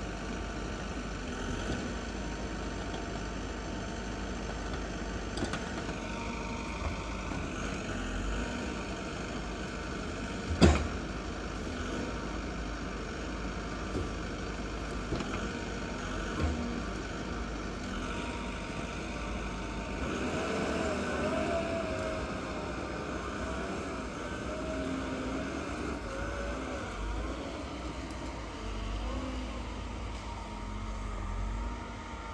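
Vimek 870.2 forwarder running, its engine hum steady under a hydraulic whine from the crane, which shifts in pitch as the crane works. A single sharp knock about ten seconds in stands out, with a few lighter knocks after it.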